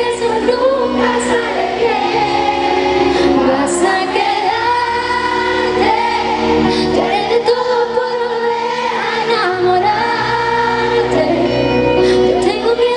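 A woman singing a pop ballad live into a microphone over band accompaniment, in long held phrases, as heard from the concert audience.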